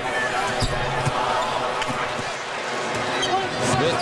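Arena crowd noise during live basketball play, with the ball bouncing on the hardwood court and a low thud about half a second in.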